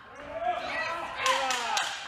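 Men shouting across a large hall during a kickboxing bout, with a couple of sharp thuds of blows landing in the second half.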